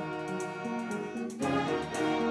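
A symphony orchestra of strings and winds playing sustained notes, swelling louder on a new chord about one and a half seconds in.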